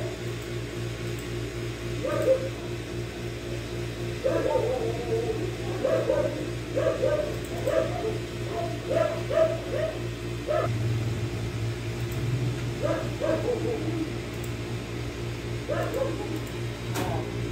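An animal's short, pitched yelping calls, repeated in clusters of two to several a few seconds apart, over a steady low hum.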